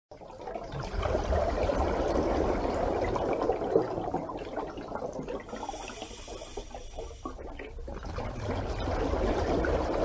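Rushing, gurgling water, swelling in over the first second and running on steadily, with a thin high ringing layer briefly in the middle.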